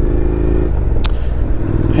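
Honda NC750X parallel-twin engine running steadily at a low cruising speed, under low wind rumble. There is a single sharp click about a second in.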